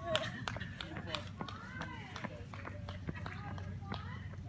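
Running footsteps slapping on asphalt as a runner passes close by, about three steps a second, with faint voices of people further off.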